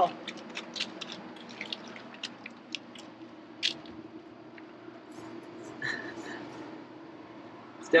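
Light clicks and ticks of hands working the valve stem and TPMS sensor on a motorhome's front tire, scattered through the first half with a sharper tick a few seconds in, over a steady low hum.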